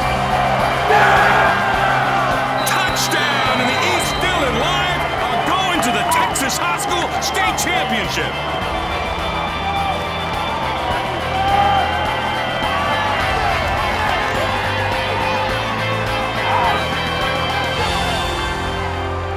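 Background score music playing under a crowd cheering and yelling, with many voices shouting at once.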